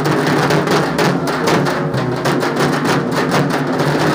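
Several dhaks, the large barrel-shaped Bengali festival drums, beaten together with sticks in a fast, dense, unbroken rhythm.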